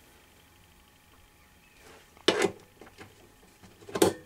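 Quiet at first, then short handling knocks and clicks of a metal XLR plug being handled and pushed into the speaker socket on a wooden amplifier case. The sharpest knock comes a little past two seconds in, and another comes at the very end.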